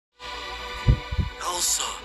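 A steady, many-toned electronic hum with three deep thuds shortly before and after one second in, then a hissing whoosh from about one and a half seconds in.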